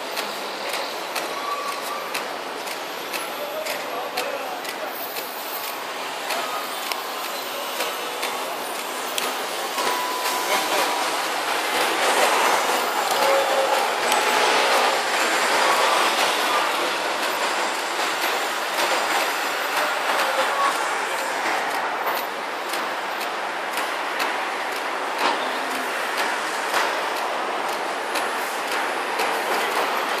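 City road traffic noise: vehicles and buses passing below, a continuous rush of engine and tyre noise that swells for several seconds about a third of the way in, then eases.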